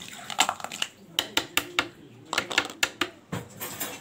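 A metal spoon knocking and scraping against a steel pot, in an irregular run of sharp clinks, a few a second.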